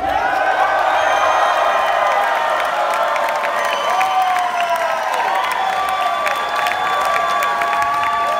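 Concert crowd cheering and clapping steadily, with many voices whooping and yelling, as the song ends.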